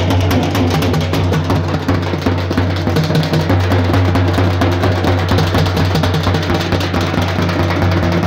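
Loud drum-heavy music: fast, dense drumming over a steady deep bass.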